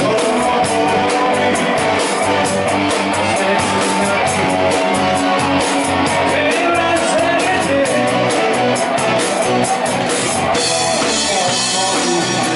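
Live rock and roll band playing: electric guitars and a drum kit with a steady beat, and a male singer at the microphone.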